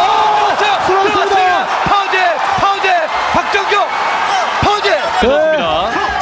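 Excited wordless shouts and drawn-out cries from the commentators, with a few sharp thuds of ground-and-pound punches landing on a downed fighter in an MMA cage.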